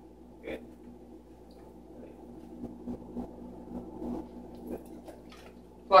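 Quiet room sound with a faint steady hum and a few soft, short rustles and small noises.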